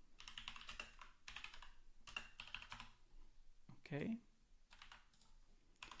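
Quiet typing on a computer keyboard: a quick run of keystrokes over the first few seconds, a pause, then a few more keystrokes near the end.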